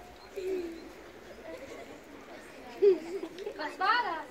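Faint, low voices of people, with one brief louder voiced sound about three seconds in and a child's voice calling out near the end.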